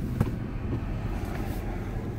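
Steady low rumble of road and engine noise heard inside a moving car's cabin, with one short click a quarter of a second in.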